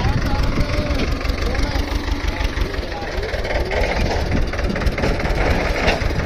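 Escort tractor's diesel engine running steadily, with voices calling in the background.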